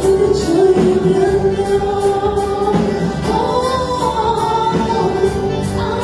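A gospel song sung into a microphone, with long held notes over a backing of music that keeps a steady beat.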